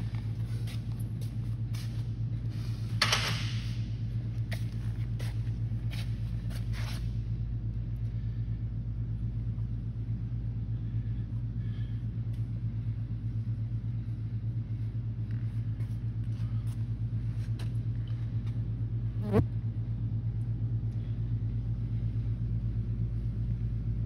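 Steady low mechanical hum, like a motor running, with a few light clicks in the first seconds and two short knocks, one about three seconds in and one about nineteen seconds in.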